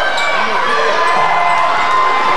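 Basketball being dribbled on a hardwood gym floor, under the steady voices and shouts of spectators and players in the gym.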